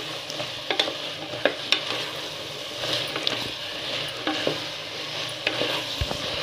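Wooden spatula stirring chopped vegetables in oil in an aluminium pressure-cooker pot, the vegetables sizzling steadily as they sauté. The spatula scrapes the pot and knocks against it sharply a few times.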